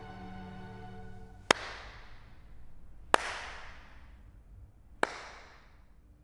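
One person's slow handclaps: three single claps spaced about two seconds apart, each echoing in a large hall, while a held music chord fades out in the first second and a half.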